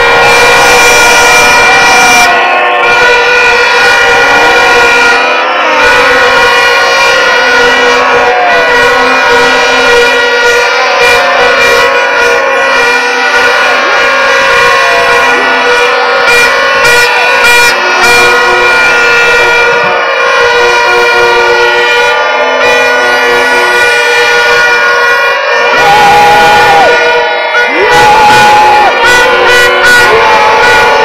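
Plastic stadium horns (vuvuzela-type) blown at a rally, making a loud steady drone, over music and voices. The crowd noise grows louder near the end.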